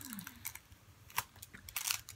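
A few light clicks and crinkles of a paper pad and its wrapping being handled.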